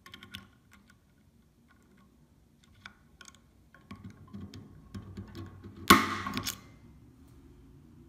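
Spring-loaded automatic center punch being pressed into a metal gantry plate: light clicks and scraping as the tip is seated, then one sharp snap about six seconds in as the punch fires, with a short ring, leaving a dimple to guide the drill.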